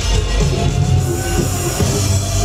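Loud live electronic dance music played on laptop and synthesizer keyboards, with a heavy bass line and held synth notes.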